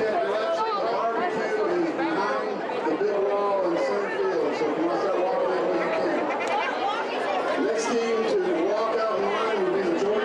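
A crowd of young ballplayers chattering and calling out all at once, a steady mass of overlapping voices with no one speaker standing out.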